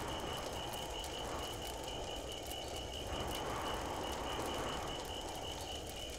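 Background ambience sound effect: a steady low rumble with a faint, rapidly pulsing high chirp, insect-like.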